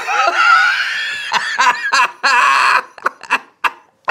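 A man laughing hard, the laugh drawn out at first and then breaking into a run of short bursts near the end.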